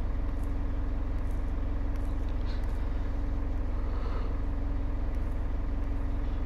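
A steady low mechanical hum that stays at one pitch and level throughout.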